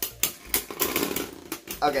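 Two Hasbro Beyblade Burst spinning tops, World Spryzen S6 and Betromoth B6, clashing in a plastic stadium: a quick, uneven run of sharp plastic clicks as the tops hit each other, ending with both tops stopped.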